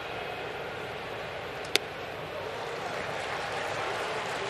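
Ballpark crowd murmur with a single sharp pop a little under two seconds in: a 94 mph four-seam fastball smacking into the catcher's mitt.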